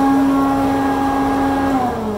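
Aurora DC 200 dust collector running with a steady hum, then switched off near the end, its pitch starting to fall as the blower winds down.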